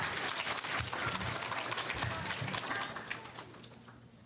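Audience applauding, the clapping dying away in the last second or so.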